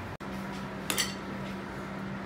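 Two quick clinks of cutlery against a plate about a second in, over a steady low hum.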